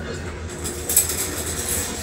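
Casters of a wheeled office stool rolling over a wooden parquet floor as someone settles onto it, with a sharp knock about a second in.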